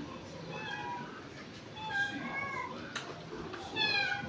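A few faint, high-pitched, wavering cries from a small animal, each under a second long, the last one sliding down in pitch near the end.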